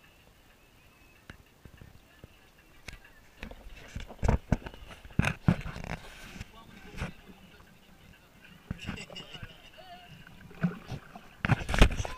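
Choppy lake water slapping and sloshing against the side of a small boat, with irregular hard thumps, loudest about four to five seconds in and again near the end.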